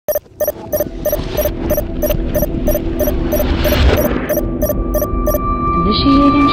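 Heavy electronic hum with a regular clicking pulse about three times a second, getting louder over the first second; the clicks stop shortly before the end. A steady high tone comes in about two-thirds of the way through.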